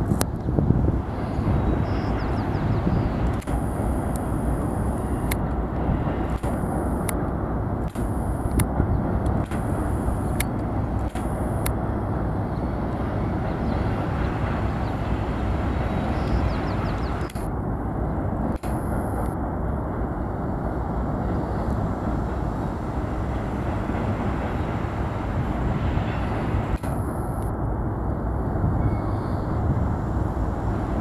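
Doublestack intermodal freight train rolling steadily across a steel truss bridge, a continuous rumble with a few sharp clicks scattered through it.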